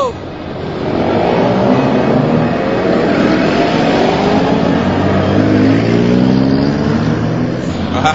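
A motor vehicle engine running and revving as it drives, loud and steady, its pitch sliding slowly up and down over several seconds.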